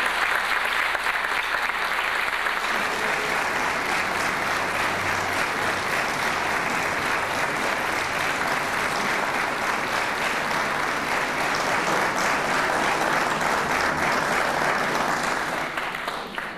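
Audience applauding steadily after an orchestral piece, the clapping dying down at the very end.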